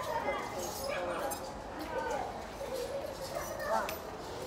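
Indistinct voices of other people in a crowded store, some rising and falling in pitch.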